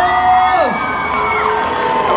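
Audience cheering, with several high-pitched screams held at once, each sliding down in pitch as it fades, one about halfway through and another near the end.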